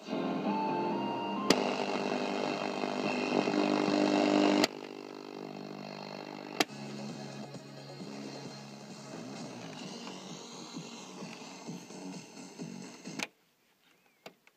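Music playing through the speakers of a Philips D8438 stereo radio-cassette recorder. It is loud at first, then drops sharply in level with a click a little under five seconds in and plays on more quietly. Near the end it cuts off abruptly with a click.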